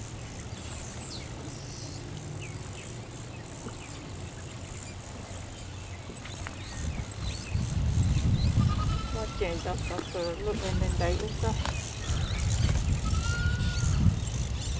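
Faint distant voices over a low rumble that grows louder about halfway through.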